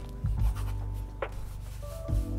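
Ballpoint pen scratching on paper during handwriting, over lofi music with sustained bass and chord notes and a soft kick drum about a third of a second in.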